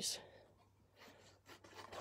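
A few faint rustles and light taps of stamped cardstock being picked up and handled, in an otherwise quiet stretch.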